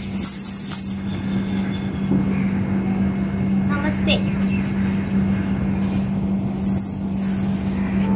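Dancer's ankle bells jingling with her footwork in the first second and again near the end, over a steady low hum and a noisy background.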